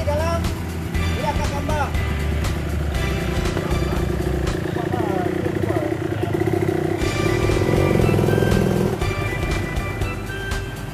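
A dirt bike's engine running close by, getting louder toward the end, under background music, with a few voices.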